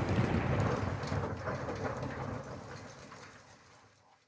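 Hiss and crackle with a low hum at the close of a hip-hop track, fading out steadily to near silence by the end.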